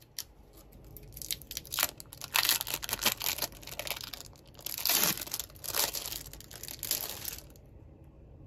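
Thin plastic film wrapper of a processed cheese slice crinkling and crackling as it is peeled open, in a run of rustling bursts that stop shortly before the end.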